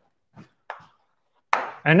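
A few short, faint knocks in a quiet pause, the clearest one about two-thirds of a second in, followed near the end by a breath as speech begins.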